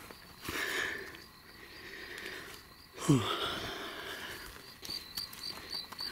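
Rustling and handling noise in dry brush as a person moves to a downed deer, with a short falling grunt of effort about three seconds in. A cricket chirps in a steady rhythm through the last second or so.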